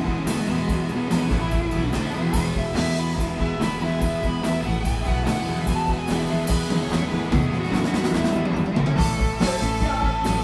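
Live rock band playing an instrumental passage: an electric guitar lead with held and bent notes over drums, bass and strummed acoustic guitar.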